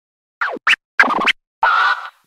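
Record-scratching sting over the show's title card: four quick turntable-style scratches, the last one longer, ending about two seconds in.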